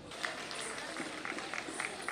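Faint outdoor crowd ambience with distant, indistinct voices and a few small clicks and knocks.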